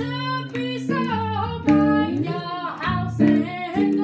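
A woman singing a slow jazz melody with bending, held notes, accompanied by an electric jazz guitar playing chords and bass notes beneath her voice.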